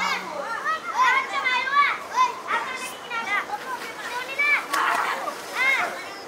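Many children shouting and calling out at once, their high voices overlapping in quick rising and falling cries: children in canoes and in the water below the ship calling up for thrown coins.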